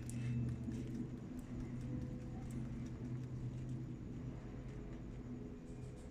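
Light, irregular taps and knocks on a shallow panning dish as finely ground pyrite is washed with water to check for gold grains, over a low steady hum.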